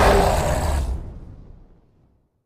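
Loud cinematic boom sound effect with a deep rumble closing a film trailer: its upper part cuts off suddenly about a second in and the low rumble fades away.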